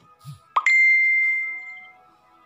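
An added sound effect: a quick rising "bloop" about half a second in, then a loud bell-like ding that rings and fades over about a second.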